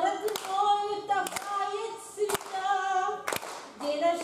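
A woman singing a Russian song at a microphone without accompaniment, holding long steady notes. Hand claps keep time about once a second.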